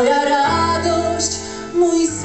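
Woman singing a Polish cabaret song over an instrumental backing track: she sings the word "moja" at the start, then the accompaniment carries on with steady chords and bass, and a louder entry comes near the end.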